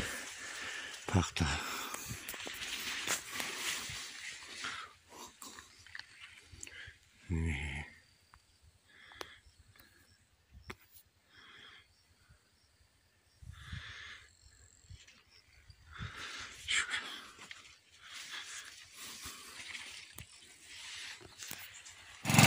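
Quiet outdoor sound with scattered soft noises and a short voice about seven seconds in.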